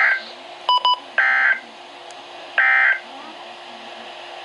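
NOAA Weather Radio end-of-message SAME data bursts through a Midland weather radio's speaker: three identical short warbling digital bursts about 1.4 s apart, the code that closes the alert. Two quick electronic beeps come between the first and second bursts.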